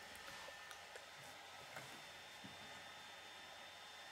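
Near silence: room tone with a few faint clicks of small plastic Lego pieces being handled.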